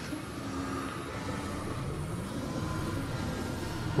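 Low, steady droning rumble from a horror film's soundtrack, with a few faint held tones, swelling slightly. It is the kind of sound that gives "vibrations" in the head.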